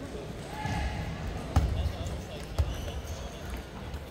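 Table tennis rally: sharp clicks of the plastic ball striking paddles and the table, the loudest about a second and a half in, over background chatter.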